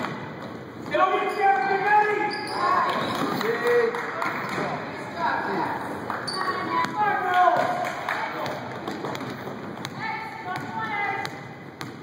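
A basketball bouncing on a hardwood gym floor during play, with voices shouting and calling out across the echoing gymnasium, and a few sharp knocks.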